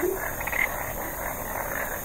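A steady harsh hiss of noise that sets in abruptly as the speech stops.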